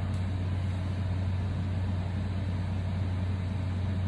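A steady low hum under a faint, even hiss.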